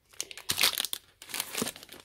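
Plastic food packets crinkling as they are handled and swapped over, in a run of short, irregular rustles.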